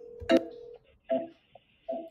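Steady single-pitch telephone call tone that stops shortly after a sharp click as the incoming call is answered, followed by a few short snatches of voice over the newly connected line.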